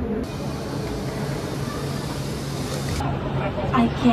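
Zurich Airport Skymetro shuttle train: a steady hiss with a low hum for most of the time, then people talking over the hum in the last second.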